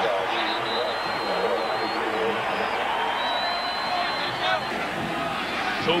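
Stadium crowd cheering as a steady roar just after a home-team touchdown.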